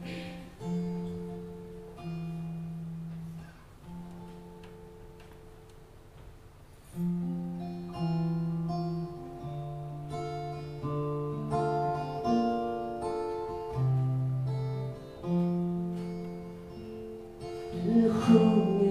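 Acoustic guitar playing the instrumental introduction to a song: picked melody notes over ringing bass notes. It softens for a few seconds, then comes back fuller about seven seconds in.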